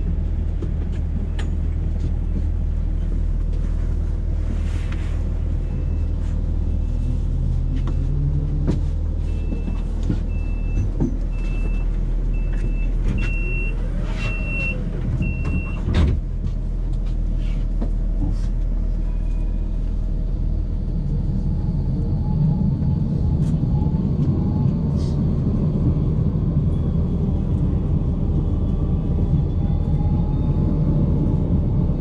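Interior of a tram standing at a stop: a steady low equipment hum. About ten short beeps, about one a second, sound as the tram readies to leave, and a loud bang comes about halfway, typical of the doors shutting. Over the last third a rumble and a faint rising motor whine build as the tram pulls away.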